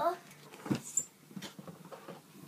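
Plastic toy wardrobe being handled close to the microphone: a dull knock under a second in, then a click with a brief high squeak about a second in, and a few faint taps.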